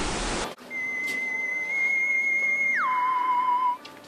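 A single pure, whistle-like tone holds steady for about two seconds, then slides down about an octave and holds for another second before cutting off near the end. A brief stretch of room hiss comes before it.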